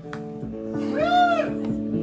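A live rock band with electric guitars holding sustained notes over a few light drum hits, in a quieter stretch of the set. About a second in, a high wailing note bends up and falls back.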